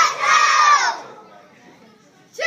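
A group of children shouting together as they punch, a drawn-out shout in unison that trails off about a second in.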